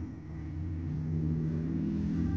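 Low mechanical rumble with a steady hum.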